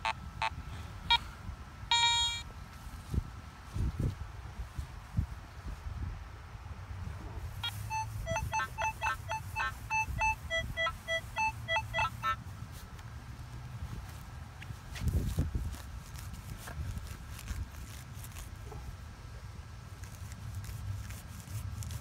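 Metal detector beeping as its coil passes over a deep buried target: a few single beeps at first, then about a third of the way in a quick run of beeps alternating between a higher and a lower pitch. These are high-tone signals that the detectorists take for deep silver.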